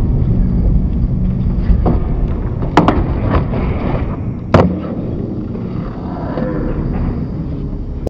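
Skateboard wheels rolling on a plywood skatepark surface, a steady low rumble. A sharp pop comes a little under three seconds in as the board goes up onto a wooden box ledge and rides along it, and a louder clack about four and a half seconds in as it comes down, with a few lighter knocks around them.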